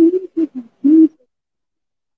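A woman's voice making three short wordless vocal sounds in quick succession, like hummed 'ooh's, on a steady pitch within about the first second.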